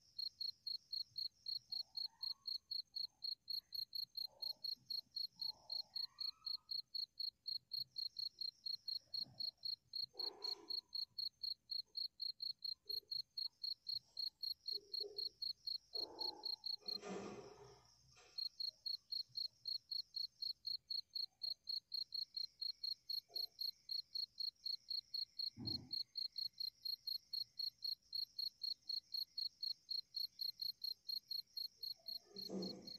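A cricket chirping in a steady, fast, high-pitched pulse, about three chirps a second, breaking off for about a second past the middle and then going on. A few faint soft knocks and rustles sound beneath it.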